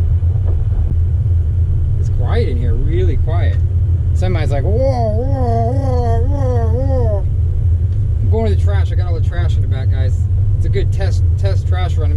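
Steady low drone of a compact pickup truck's engine and drivetrain, heard from inside the cab as it pulls away under way in a low gear.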